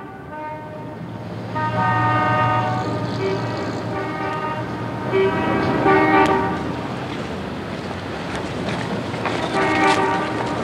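Car horns honking over steady street traffic noise: several horns at different pitches, each held about a second and overlapping.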